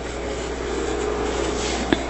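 A steady rubbing, scraping noise that grows slightly louder after about half a second, over a constant low hum.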